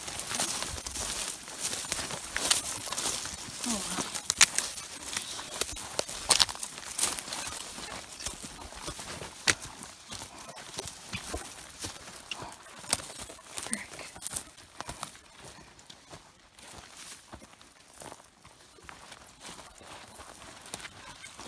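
Footsteps through dry brush: boots crunching and twigs snapping in irregular sharp cracks as stiff stems scrape past legs. The cracks are denser and louder in the first half and thin out later.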